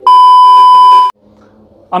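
TV colour-bars test-tone beep, a single steady high tone held loud for about a second and then cut off abruptly.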